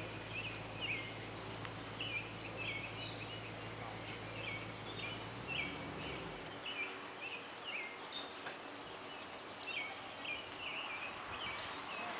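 Small birds singing in repeated short, chirpy phrases in the outdoor background. A low steady hum underneath drops in pitch and stops about halfway through.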